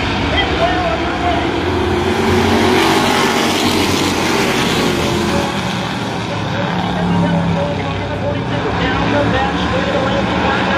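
A pack of street stock race cars' V8 engines running at low speed together, a steady multi-engine rumble with pitches drifting up and down as the field rolls in formation behind the pace truck.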